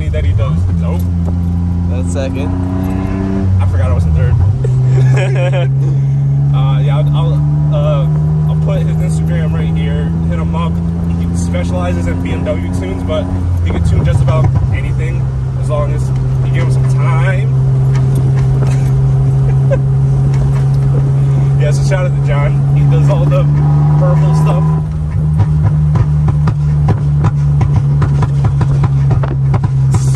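BMW Z3 roadster's engine running under way with the top down, the note climbing slowly and dropping at gear changes about four and fourteen seconds in, then holding fairly steady; near the end the sound turns rougher and choppier.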